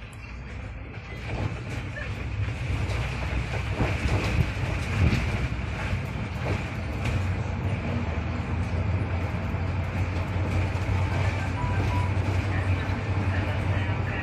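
Cabin noise of a SOR NB 18 City articulated bus pulling away and accelerating: the engine and running noise build up over the first few seconds, then hold as a steady low drone with a few knocks around four to five seconds in.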